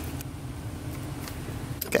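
A steady low hum, with nothing louder over it, until a short spoken word right at the end.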